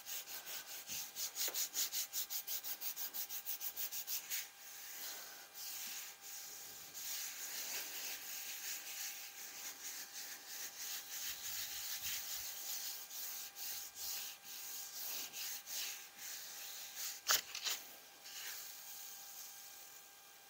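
A hand rubbing a sheet of paper laid over a gel printing plate, burnishing it down to pull a monoprint. Quick, rhythmic back-and-forth strokes for the first few seconds give way to steadier rubbing, with one sharp tap about seventeen seconds in.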